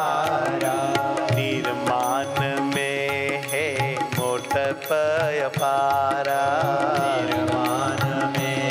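A male voice singing a devotional verse in a slow, ornamented melody, with a hand drum keeping a steady beat.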